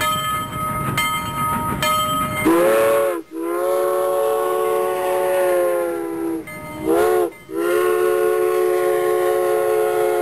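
Multi-note train whistle blowing four blasts: short, long, short, long. Each blast is a chord of several notes that bends in pitch as it starts and stops. Before the first blast, about two and a half seconds in, there are steady ringing tones.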